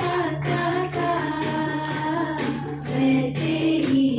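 Women singing a devotional song together into microphones, over a steady low keyboard tone.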